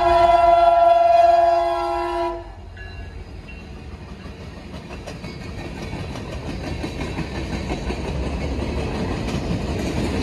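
A Leslie RS5T five-chime horn on a Norfolk Southern EMD SD60E locomotive sounds a loud multi-note chord for the grade crossing; the blast cuts off about two seconds in. After that the freight train's cars roll past with steady wheel-on-rail clatter that grows louder toward the end.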